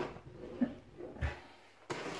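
Quiet handling of an unpowered air pump as it is set down on a wooden tabletop, with a soft low knock a little past a second in and a sharp click near the end.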